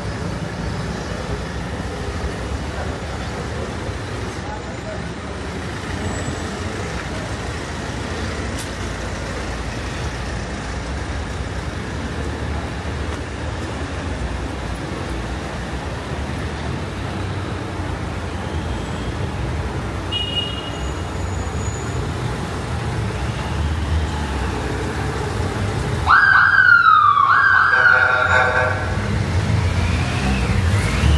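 Street traffic and city ambience along a busy pavement. Near the end a vehicle siren starts suddenly, louder than the street, with a falling wail that lasts about three seconds.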